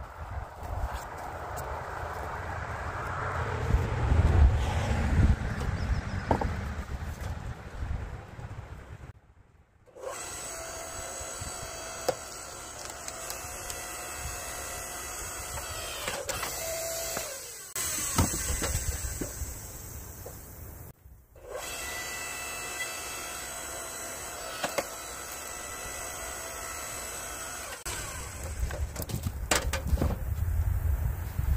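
Electric log splitter: after a stretch of low rumble and knocks, its motor starts about a third of the way in and runs steadily as the ram pushes through a log. It cuts out twice for a moment and starts again each time, then runs on until near the end.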